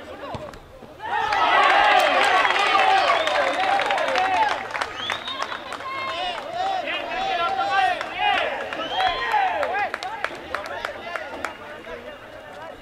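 Several voices shouting over one another, rising suddenly about a second in and loudest for the next few seconds, then going on more thinly, with scattered sharp clicks.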